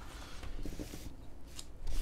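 Low room tone with a few faint small clicks and rustles of handling, something being moved or touched by hand.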